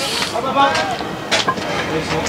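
Indistinct background voices, with a brief hiss at the start and one sharp click a little over a second in.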